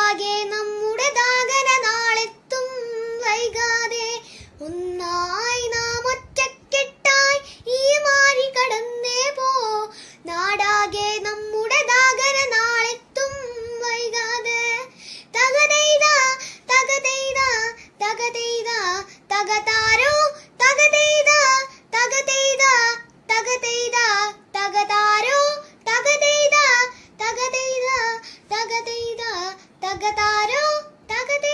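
A young girl singing a Malayalam song solo with no accompaniment, in phrases of held notes that slide in pitch, with short breaths between them.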